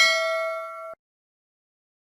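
Notification-bell 'ding' sound effect: a single bright metallic chime that rings with several overtones, fades and cuts off abruptly about a second in.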